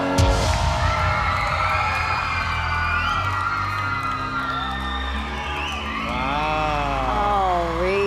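A sudden loud bang-like sound effect as a coach's block button is pressed, then backing music with the audience whooping and cheering.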